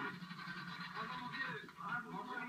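Indistinct voices on an old, narrow-sounding newsreel soundtrack, played from a television speaker.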